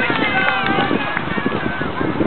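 Several high-pitched voices calling and shouting at once, over short sharp clicks of field hockey sticks striking the ball and each other.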